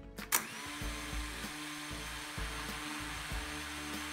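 The four brushless motors of a ZLRC SG108 mini drone start abruptly about a third of a second in, then run steadily with the propellers spinning on the ground, a high, even whir. Quiet background music plays beneath.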